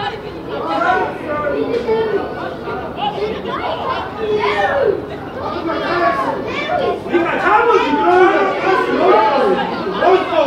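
Several voices talking and calling out over one another, fairly high-pitched, as from players and onlookers around a football pitch.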